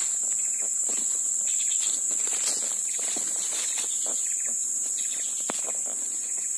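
A steady, high-pitched chorus of tropical insects runs unbroken, with the scattered light rustle and crunch of footsteps moving through dry leaves and undergrowth.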